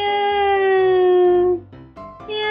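A cat's long, drawn-out meow, held on one slowly falling pitch for about a second and a half, with the start of a second meow near the end.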